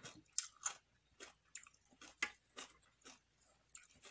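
A person chewing crisp raw salad, lettuce and cucumber, close to the microphone: a string of irregular, crisp crunches.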